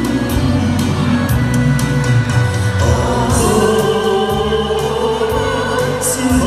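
Amplified singing through handheld microphones over a backing track with a steady bass line and drum beat, several voices together.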